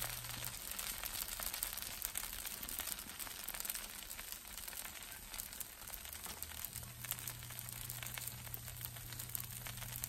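Dosa batter cooking on a hot nonstick tawa, giving a faint, even crackle of fine sizzling ticks. A low hum drops out about half a second in and comes back near seven seconds.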